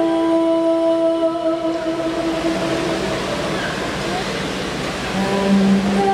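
Stage-show soundtrack over the arena's sound system. A long held note fades away over the first three seconds while a rushing, wind-like swell rises, and a new low held note comes in about five seconds in.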